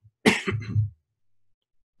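A man coughs once, a single short cough lasting about half a second.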